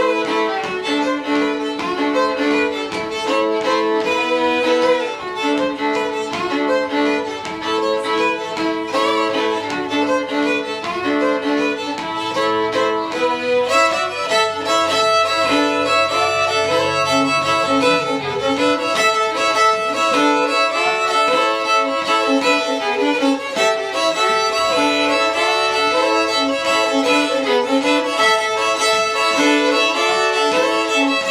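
Two fiddles playing a Cajun tune together in a live duo. The bowed melody runs without a break, and about halfway through the notes turn quicker and busier.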